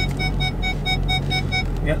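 Rapid warning chime in a Ford Super Duty pickup's cab: short identical dings, about six a second, over the low steady hum of the running engine.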